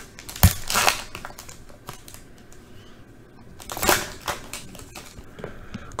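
Foil wrapper of a Panini Prizm baseball card pack being torn open and crinkled by hand, with two louder rips, one about half a second in and one about four seconds in.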